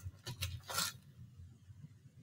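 Wax crayons being moved and set down on paper: two light clicks in the first second.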